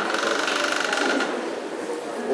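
Electric buzzer of a boxing-gym round timer sounding one steady buzzing tone that cuts off a little over a second in, signalling a change of round or rest period.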